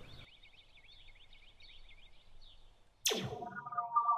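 Faint bird chirps over near-quiet, then about three seconds in a sudden loud whoosh sound effect that drops steeply in pitch, followed by a steady electronic hum of several tones.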